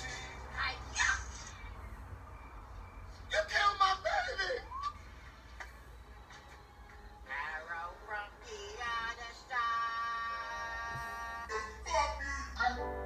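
Comedy video clips playing from a laptop speaker into a small room: music with bursts of loud, excited voices a few seconds in, then a long held sung note near the end.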